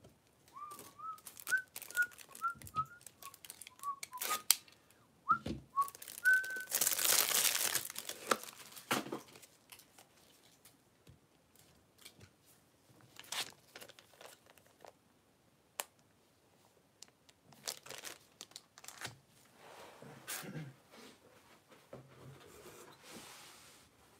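A person whistling a short run of quick notes for about six seconds. This is followed by a loud crinkling rustle lasting about a second and a half, then scattered clicks, taps and softer rustling of handling.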